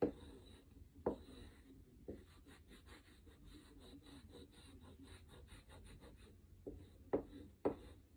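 Chalk rubbing on paper in quick, repeated back-and-forth strokes as a thick line is drawn, faint, with a few sharper, louder strokes now and then and more of them near the end.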